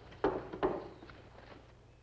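A rifle being handled on a wooden bench: two soft knocks early on, then faint handling noise that dies away.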